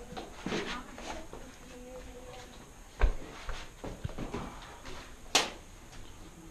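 A single sharp knock about three seconds in, the loudest sound, and a short hissing scrape near the end, over faint voices.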